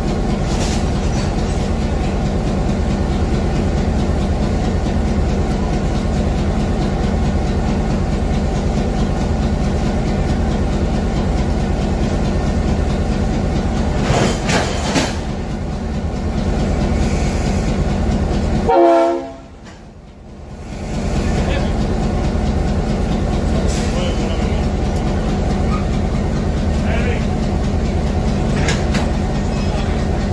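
EMD G8 diesel-electric locomotive idling, a steady low engine drone. About two-thirds of the way through, the sound briefly drops away and then comes back.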